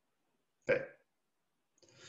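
Near silence broken by one short voiced sound from a man, under half a second long, about two-thirds of a second in.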